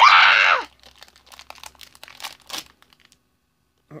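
A voice calls out loudly for about half a second. Then foil packaging crinkles and tears in scattered crackles as it is pulled open by hand, and goes quiet about a second before the end.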